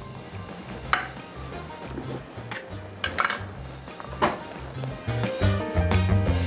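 Chef's knife cutting broccoli on a wooden chopping board: three sharp knocks, about a second in, around three seconds and just after four seconds. Background music with a steady bass line plays throughout and grows fuller near the end.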